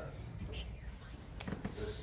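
A man's voice speaking quietly, close to a whisper, over a steady low hum.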